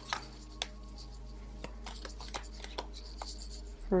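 Tarot cards handled while one more card is drawn from the deck: scattered soft ticks and rubs of card stock at irregular intervals.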